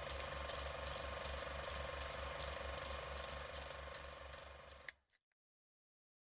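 Film projector running: a steady mechanical clatter of about five beats a second over a constant whir, stopping abruptly about five seconds in.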